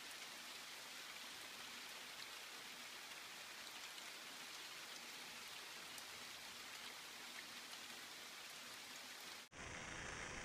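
Steady rain: a faint, even hiss with scattered light drop ticks. It cuts off suddenly about nine and a half seconds in, and a different steady noise takes over.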